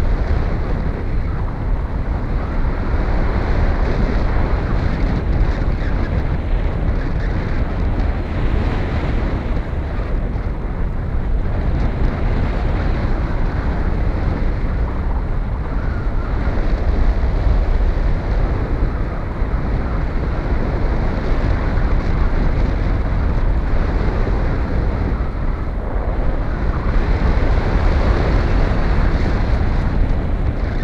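Airflow rushing over the camera microphone of a paraglider in flight: loud, steady wind noise that swells and eases a little.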